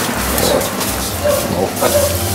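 A man's voice making appreciative 'mmm' sounds and a few murmured words while savouring food, over a steady background hiss.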